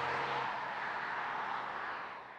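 A 2013 Ford Focus ST driving away on asphalt: a steady hiss of tyre and road noise with a faint engine hum that drops out about half a second in, the whole sound slowly fading.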